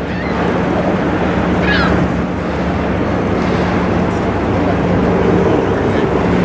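Passing chemical tanker's machinery running with a steady low hum, over steady water and wind noise. A short high chirp sounds about two seconds in.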